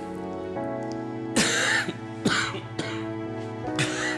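An ailing older man coughing in four short bursts over soft, sustained background music.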